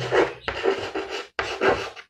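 Chalk writing on a blackboard: a run of short scratchy strokes as a word is written, with a brief break a little past halfway.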